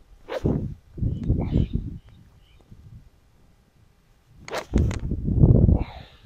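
A golf tee shot: a sharp club strike on the ball about four and a half seconds in, among gusts of wind buffeting the microphone, the loudest right after the strike.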